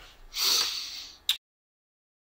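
A single sharp breath through the nose, like a snort or sniff, lasting under a second, followed by a short sharp click as the audio cuts off.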